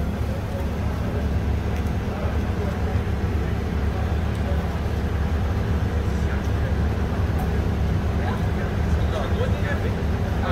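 Diesel engine of a demolition excavator running with a steady low hum, without impacts or crashes.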